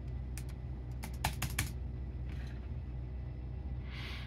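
Dell laptop keyboard keys tapped: two clicks, then a quick run of about five, pressed to answer a 'press any key to boot from USB' prompt, over a low steady hum.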